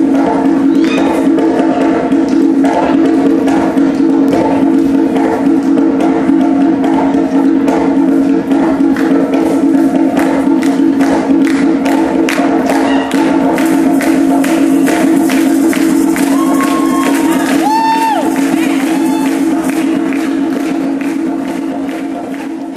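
Samba music with rapid hand drumming on a conga, the drum strokes growing denser about halfway through, over a steady low sustained tone and some crowd voices.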